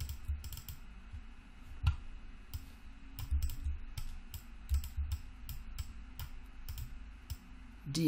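Irregular clicking of a computer keyboard and mouse, some clicks with soft low thumps under them.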